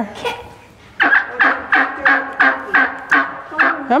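Hen turkey calling in a quick series of short yelps, about three a second, starting about a second in after a brief lull. These are the calls of a hen separated from her flock.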